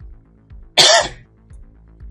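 Quiet steady background music with one short, loud burst of voice-like sound, like a cough, just under a second in.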